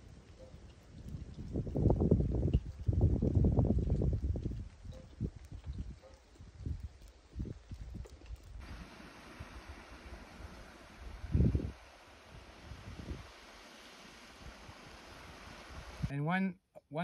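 Wind gusting on a phone's microphone, loudest a couple of seconds in. About halfway through the sound changes to a steady rushing hiss of water spilling out of a full pond through its spillway, with one more gust of wind later.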